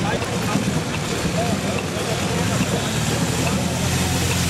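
Police motorcycle engines running at walking pace in a slow escort, a steady low rumble mixed with street noise and voices.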